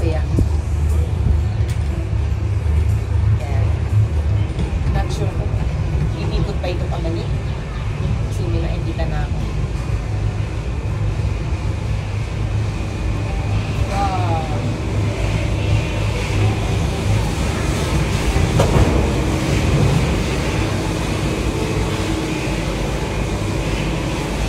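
Cable car gondola running along its cable into the terminal station: a steady low rumble, with a high steady whine that grows louder in the second half as the cabin enters the station.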